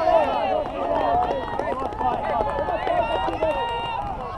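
Several high young voices shouting and calling over one another at once, the players calling during play in a children's football match.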